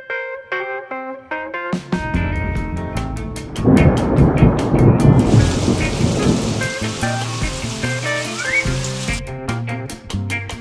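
Cartoon thunder and rain sound effects over background music: a thunder rumble starts about three and a half seconds in, followed by a steady hiss of rain that stops just before the end.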